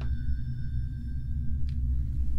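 Horror-film underscore drone: a steady deep rumble under thin, sustained high tones. The high tones cut off with a faint tick near the end.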